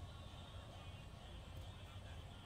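Near silence: faint, steady outdoor background with no distinct sound.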